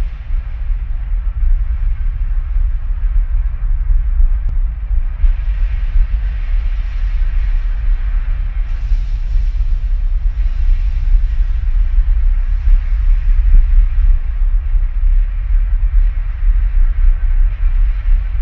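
Bass boat running at speed on a Mercury outboard: a loud, steady roar of wind buffeting the boat-mounted camera's microphone over the drone of the motor and the hull on the water.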